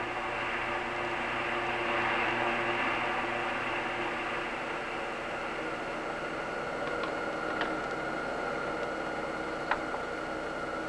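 Steady hissing hum of a spaceship in flight, a soundtrack effect. A higher steady tone joins about halfway through, and a few short faint blips come near the end.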